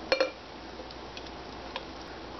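A glass blender jar clinks twice against the rim of a drinking glass as it is tipped to pour a thick smoothie, the two clinks ringing briefly. A few faint light ticks of glass follow over the next second and a half.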